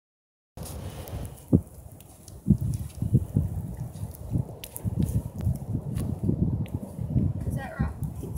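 Irregular low thumps and rustling with a few light clicks as a saddle and saddle pad are handled and set on a horse's back.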